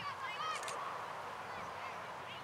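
A few short bird calls, one at the start and another about half a second in, over a steady outdoor background hiss.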